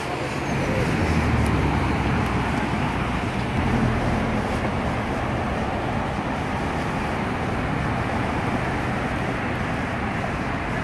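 Steady road traffic noise from cars passing on a busy multi-lane street, a little louder for a few seconds about a second in.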